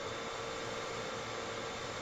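Steady low hiss of room tone and microphone noise over a video-call connection, with a faint steady hum.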